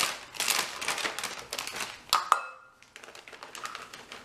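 Plastic bag of shredded mozzarella crinkling as the cheese is shaken out into a plastic measuring cup, a run of fine crackles. A little past two seconds comes one sharp clink with a short ring.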